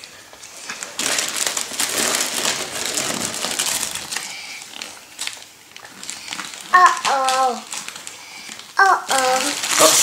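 Christmas wrapping paper being torn and crumpled by hand as a present is unwrapped, coming in repeated bursts.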